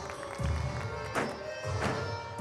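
Floor exercise music playing, with deep bass beats. Two short thuds come in the second half as a gymnast's hands and feet strike the sprung floor during a running tumbling pass.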